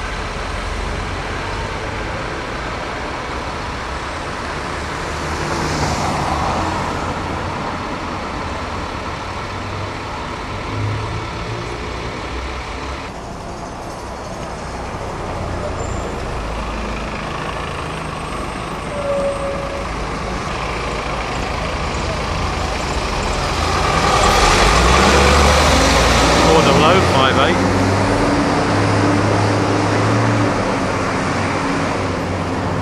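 Diesel bus engines running in a street, with a brief hiss about six seconds in. Near the end the sound grows louder and the engine note rises as a bus pulls away.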